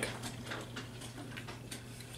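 Drinking from a soda can: faint small clicks of sipping and swallowing, heard over a low steady hum.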